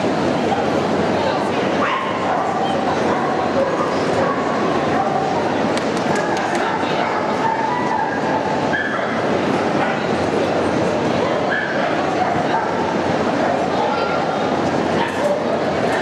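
Steady chatter of a crowded exhibition hall with dogs yipping and whimpering now and then over it.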